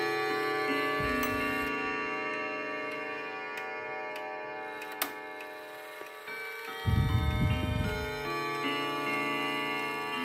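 Hermle triple-chime wall clock playing a chime tune on its rods, notes struck one after another and left ringing over each other, with a few sharp ticks. A loud low rumble comes about seven seconds in.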